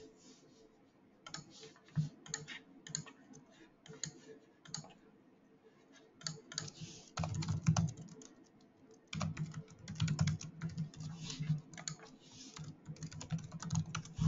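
Typing on a computer keyboard: irregular key clicks, sparse at first, then denser flurries about halfway through and again over the last few seconds, as sign-in details are entered.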